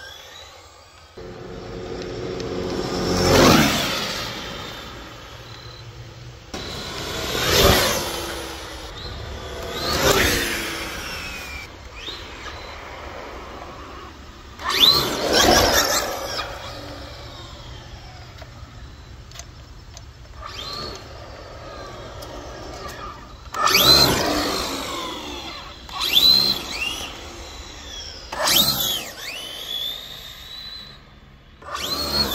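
Traxxas Rustler-based RC drag car's brushless electric motor whining at full throttle in a series of high-speed runs. About seven separate passes, each a high whine that rises in pitch as the car accelerates and falls as it goes by.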